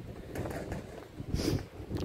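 Wind buffeting the phone's microphone, an uneven low rumble, with a short hiss about one and a half seconds in.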